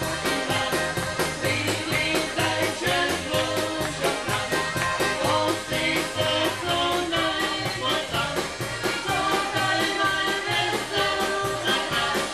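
A polka band playing a fast polka with a steady, even beat.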